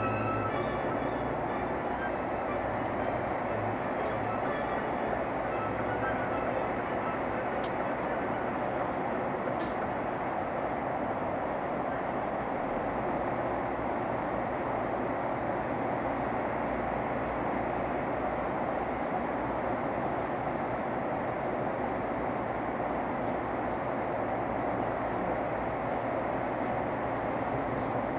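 Steady rushing road and tyre noise heard from inside a car's cabin while driving through a motorway tunnel. Radio music fades out within the first couple of seconds.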